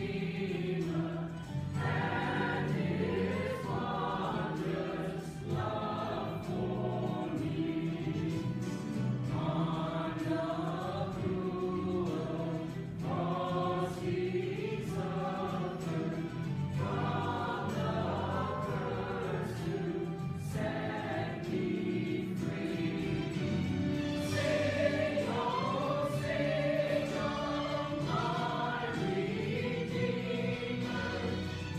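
A mixed choir of men's and women's voices singing a sacred choral piece, phrase after phrase.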